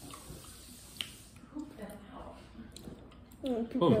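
Faint wet clicks and smacks of people chewing jelly beans, with one sharper click about a second in; near the end a voice says "oh".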